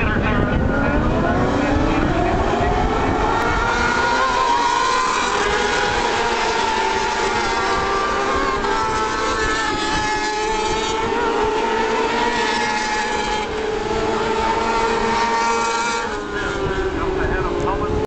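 Superbike racing motorcycles at full throttle on a road circuit, their engine note rising over the first few seconds as they accelerate, then a sustained high-revving wail as the bikes go by. Wind buffets the microphone.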